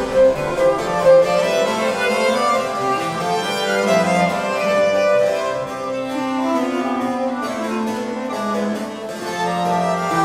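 Baroque chamber ensemble playing a three-part canzona: violins and other bowed strings in interweaving lines over harpsichord continuo, at an even level.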